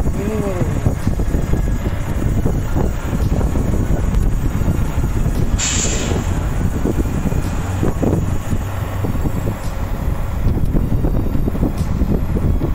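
Heavy rumble of a garbage truck's diesel engine running, mixed with wind buffeting the microphone. There is a short, sharp hiss of released air about six seconds in.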